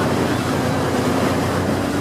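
A boat's engine running steadily under the rush of churning wake water, with wind on the microphone.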